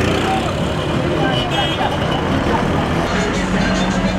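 City street traffic: car engines running close by in slow-moving traffic, with voices and music mixed in.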